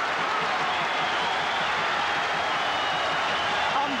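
Boxing crowd cheering and applauding, a steady din of many voices and clapping.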